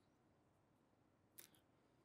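Near silence: room tone, with one faint brief click about one and a half seconds in.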